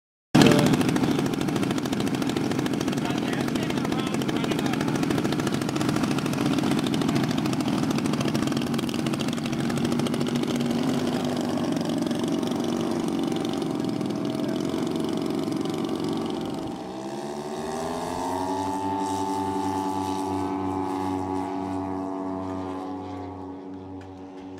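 Twin propeller engines of a large radio-controlled scale OV-1 Mohawk model running loud and rough. About two-thirds of the way through they rev up, rising in pitch to a high steady note, as the model sets off on its takeoff roll.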